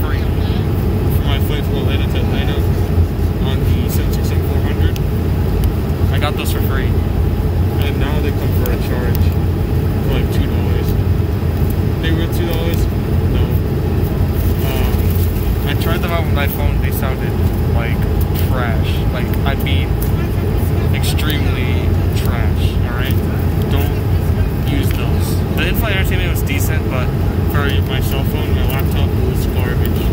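Steady in-flight cabin noise of an Airbus A220-100, the low rumble of its engines and the airflow around the fuselage, with people's voices murmuring through it. Foil snack packets crinkle now and then as they are handled on the tray table.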